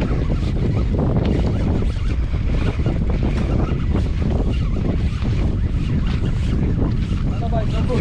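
Wind buffeting the microphone, with choppy sea water washing against the side of a small boat: a steady low rumble.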